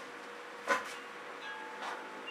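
Faint handling sounds of a plastic spatula on a canvas coated in wet acrylic paint: one short soft noise about a third of the way in and another near the end, over a faint steady hum.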